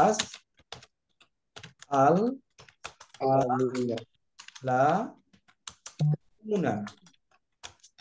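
Computer keyboard typing: scattered, irregular key clicks between stretches of a voice speaking.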